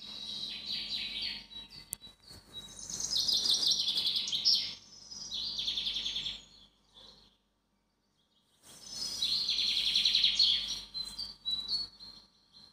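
Birds chirping and trilling in several quick, high-pitched bursts of song, with a silent gap of about a second about two thirds of the way through.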